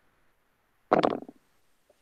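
Near silence on a video-call line, broken about a second in by one brief vocal sound from a person, under half a second long.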